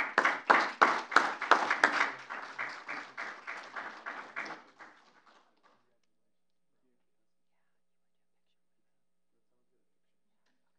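A small audience clapping, a steady patter of claps that thins out and stops about five seconds in.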